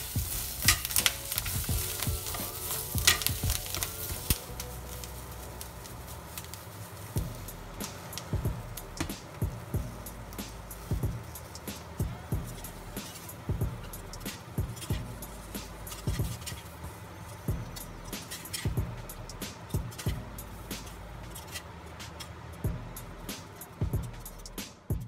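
Shishito peppers sizzling as they blister in a hot, oiled cast-iron skillet, loudest in the first few seconds, with metal tongs clicking and scraping against the pan as the peppers are turned. Background music with a beat runs underneath.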